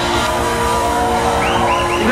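Live rock band playing the drawn-out closing chord of a song through the PA, the notes held steady over a pulsing low end. A few short high rising-and-falling squeals come in near the end.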